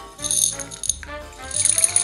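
Background music with a steady bass line, over which dry popcorn kernels rattle and clatter as they are poured from a glass into a glass of water, loudest in the last half second.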